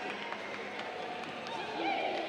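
Arena crowd noise with scattered voices, and a loud rising-and-falling shout or whoop near the end.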